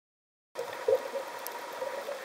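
Underwater ambient noise: a steady, muffled hiss that starts about half a second in, with a brief swell near the one-second mark.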